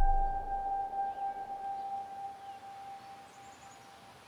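Film sound effect: the tail of a deep boom dying away under a high, steady ringing tone that fades out about three and a half seconds in. Faint bird chirps come through underneath.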